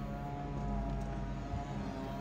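Music playing quietly from the car's original factory stereo, heard from inside the cabin as a steady run of held tones.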